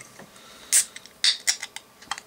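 Fingers working the pull tab of a small aluminium can of cola as it cracks open: a short hissy burst a little under a second in, then several small clicks of the tab.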